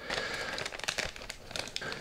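Clear plastic bag holding a wiring harness crinkling as it is handled, a faint, irregular run of small crackles.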